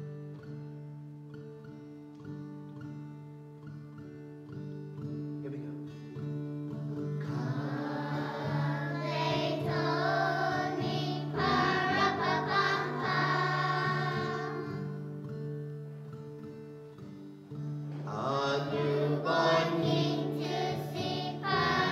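A children's class choir singing a Christmas song over instrumental accompaniment with steady low held notes. The accompaniment plays alone for about the first seven seconds; the voices then come in, stop briefly, and come back near the end.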